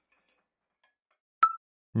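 Near silence, then a single sharp click with a brief high ping about a second and a half in: an editing transition sound effect.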